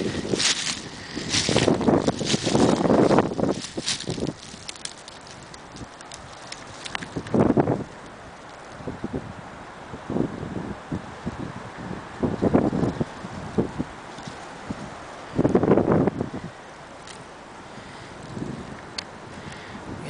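Wind gusting on the microphone in irregular bursts over a steady windy hiss. The gusts are loudest in the first few seconds and again about three-quarters of the way through. Shoreline brush rustles against the camera at the start.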